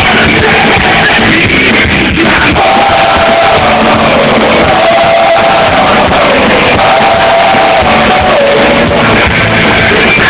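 Live rock band playing loud, with drums and electric guitars, and a melody held on long notes through the middle of the passage. The sound is dense and dull, with little treble.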